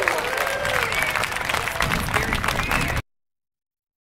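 Audience applauding, with a few voices calling out over the clapping; it cuts off suddenly about three seconds in.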